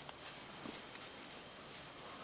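Quiet room hiss with a few faint, short clicks as hands handle an aluminium flashlight lying on a paper dollar bill.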